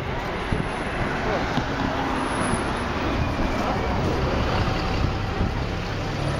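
Steady road traffic noise from passing vehicles, with indistinct voices of people close by.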